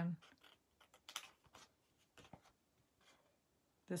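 Small craft scissors snipping into thin designer series paper along a score line: a scattering of faint, short, sharp snips, the clearest about a second in.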